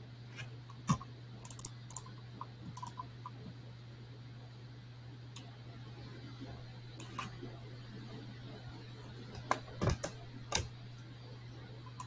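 Scattered sharp clicks at a computer, some in quick clusters near the start and a few together about ten seconds in, over a steady low electrical hum.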